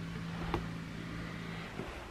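A steady low hum with one short click about half a second in; the hum stops shortly before the end.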